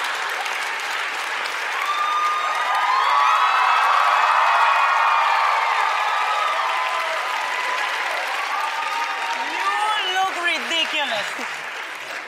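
Studio audience applauding and cheering, swelling to its loudest a few seconds in and then easing off. Near the end a voice comes through over the applause.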